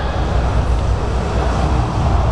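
Loud, steady arena din in a fight hall: a heavy low booming rumble from the PA system's bass with crowd noise over it.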